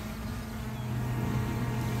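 Steady buzzing hum of a DJI Mavic Air 2 quadcopter's propellers as the drone circles the pilot, slowly growing louder.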